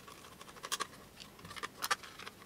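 Small precision screwdriver turning screws out of the battery cover of a metal-cased toy radio-control transmitter: faint scratchy clicks and scrapes, with a couple of sharper clicks about three-quarters of a second in and again near the end.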